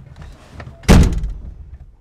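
A vehicle's driver door slammed shut once, about a second in, the sound dying away over most of a second.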